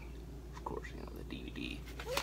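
Faint mumbled, half-whispered speech, with the rustle of a plastic disc case being handled, over a steady low hum.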